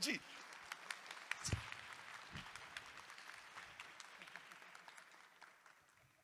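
Audience applauding, the clapping slowly dying away until it stops near the end.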